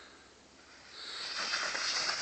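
Snowboard sliding down packed snow: a faint scraping hiss that starts about a second in and grows louder as the board picks up speed.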